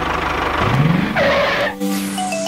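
An engine sound effect with a fast low pulse, revving up about half a second in, then a short skidding screech, cutting off near the end as the music comes back.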